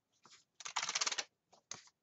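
A paper planner being handled on a desk: a half-second burst of rapid clattering paper-and-plastic clicks, then a single short tap.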